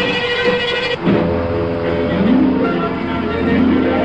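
Old film soundtrack: music breaks off about a second in and gives way to a steady low rumble of a train running, with pitched tones rising and falling over it.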